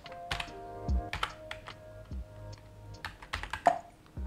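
Typing on a computer keyboard: an uneven run of keystroke clicks as a terminal command is entered, over quiet background music.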